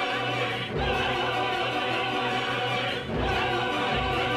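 Mixed opera chorus of men and women singing with orchestra, in long held chords broken by short pauses about a second in and again near three seconds.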